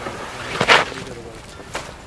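Short scraping hiss of shoes and hands sliding down a steep wooden plank, a little before the middle, followed by a faint step. Faint voices sound in the background.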